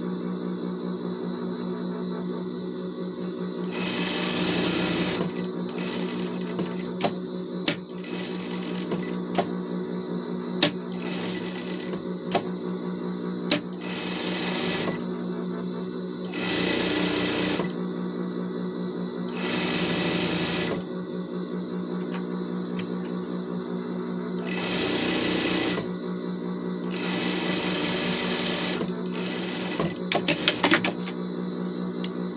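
Industrial straight-stitch sewing machine sewing a seam along fabric strips in short runs of one to two seconds, about eight times, over a steady low hum. A few sharp clicks fall between the runs.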